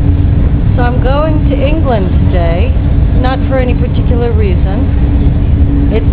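Eurostar high-speed train running at speed, heard from inside the carriage: a loud, steady low rumble with a steady hum. A voice talks over it from about a second in until about five seconds in.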